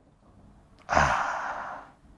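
A man's loud breath close to a clip-on microphone, about a second long, starting about a second in.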